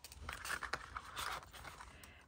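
A small clear plastic sticker box and its plastic sleeve being handled and closed: light rustling with a few soft clicks.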